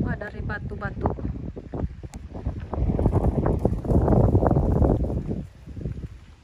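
Wind buffeting the microphone outdoors, a low rumble that is heaviest from about three to five seconds in.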